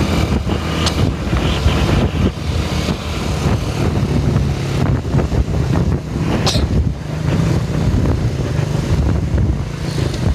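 Road vehicle engines running steadily at speed, a low drone with wind rushing over the microphone, while closely following an intercity bus. A brief high-pitched sound cuts in about six and a half seconds in.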